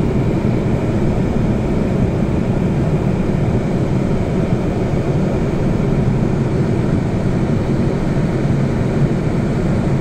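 Steady low rumble of engine and road noise inside a moving bus, even throughout.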